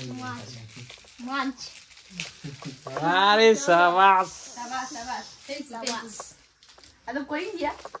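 People talking in a small room, with a child's high-pitched voice loudest about three seconds in.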